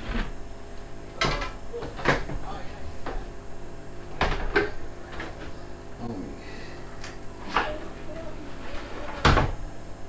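A sliding glass door panel being handled and fitted into its frame: a string of about seven sharp knocks and clatters, irregularly spaced, the loudest near the end, with a faint murmur of voices underneath.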